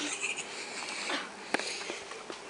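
Rustling handling noise from a handheld camera rubbing against skin and clothing, with one sharp click about one and a half seconds in.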